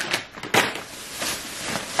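Plastic shopping bags and a snack pouch rustling and crinkling as groceries are handled, with one sharper crackle about half a second in.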